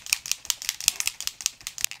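Mixing ball rattling inside a bottle of Cover FX Illuminating Setting Spray as the bottle is shaken hard: rapid sharp clicks, several a second. The shaking stirs up the glitter in the spray.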